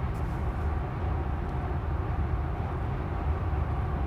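Steady road and tyre noise inside a Tesla electric car's cabin at about 65 mph, a low, even rumble with no engine note.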